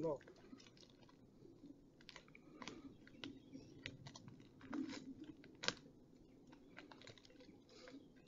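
Faint, irregular crunching and crackling of twigs, bark and dry leaf litter as someone moves on and around a tree, with one sharper snap a little before six seconds in.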